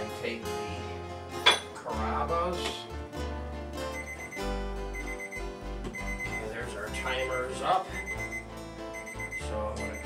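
An electronic oven or kitchen timer beeping repeatedly, with short high-pitched beeps starting about four seconds in, signalling that the bread rolls in the oven are done. Background music with guitar plays throughout, and there is one sharp knock about a second and a half in.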